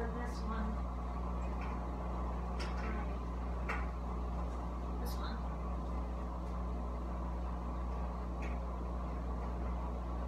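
A steady low hum with a handful of light clicks and knocks spread through it, and handling of clothing near the end.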